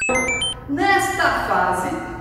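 A quick run of stepped electronic beeps in video-game style, jumping up and down in pitch and ending about half a second in, followed by a person speaking.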